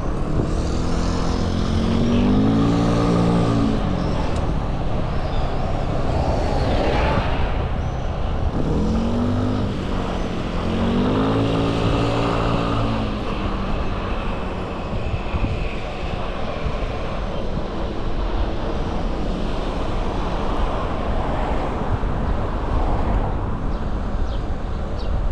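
Street traffic heard from a moving bicycle over a steady low wind rumble on the microphone. Motor vehicle engines pass twice, their pitch rising and then falling: briefly about two seconds in, and for longer from about nine to thirteen seconds in.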